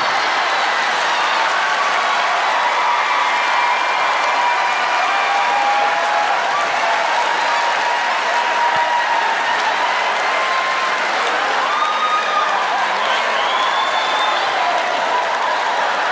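Large theatre audience applauding, a steady, dense clapping that holds at one level throughout.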